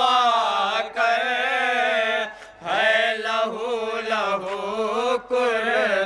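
A man's voice singing a noha, a Shia lament in Urdu, unaccompanied, in long, wavering held lines, with a short break about two and a half seconds in.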